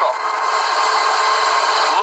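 Steady helicopter cabin noise, a hiss with a faint steady whine, heard through the news pilot's open microphone.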